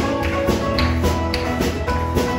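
Live worship band music from guitars and piano, with a steady percussive beat of about four strokes a second.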